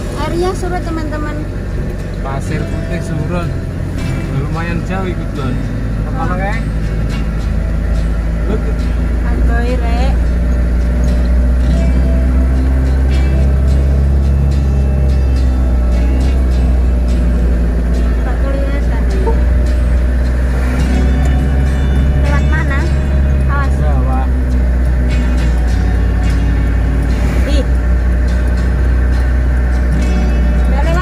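Steady low engine and road rumble inside a moving car's cabin, with a voice over it that comes and goes.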